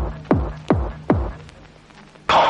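Electronic dance music stripped down to a lone kick drum, each beat dropping in pitch, about two and a half beats a second, fading out about a second in over a faint steady hum.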